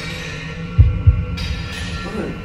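Heartbeat sound effect: a deep double thump just under a second in, over a steady low hum.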